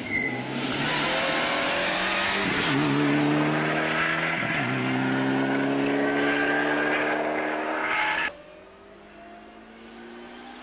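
Rally car engine at full throttle, accelerating hard and changing up through the gears, its pitch dipping at two gear changes. The sound cuts off suddenly about eight seconds in.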